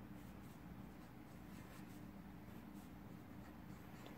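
Faint strokes of a felt-tip marker on paper, drawing small circles and connecting lines, over a low steady hum.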